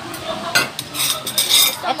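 Cutlery and plates clinking and scraping as food is served at a table: several sharp clinks, loudest around a second and a half in.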